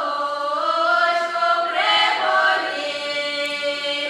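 A girls' folk vocal ensemble singing a cappella in Russian traditional style, several voices moving together in long, sliding notes and settling on a long held note near the end.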